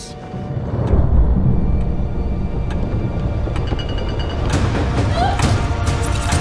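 Dark trailer music that swells in with a heavy, deep low end about a second in, with a few sharp, thin clicks spaced through it.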